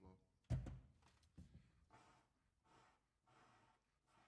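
Near silence between tunes: a single dull thump about half a second in, then faint low voices.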